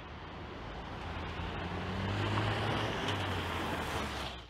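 A Ford Focus RS with its 2.3 EcoBoost turbocharged four-cylinder drives toward and past, its engine a steady low note over broad road noise, growing louder through the first half.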